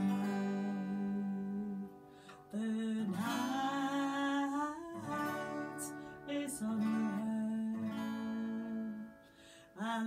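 Acoustic guitar strummed and picked under a woman singing a slow Irish folk song with long held notes. The music dips briefly about two seconds in and again near the end.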